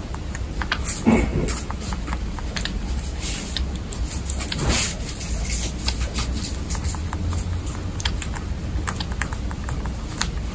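Baby guinea pig licking and chewing at the tip of a milk syringe: a scattered run of small wet clicks and smacks. Two brief louder sounds stand out, about a second in and near the middle.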